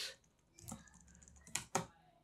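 A few separate key presses on a computer keyboard: one light click early, then two louder clicks close together near the end.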